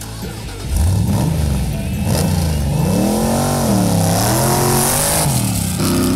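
Dune buggy engine revving hard about a second in, then climbing and dropping in pitch several times as it accelerates away.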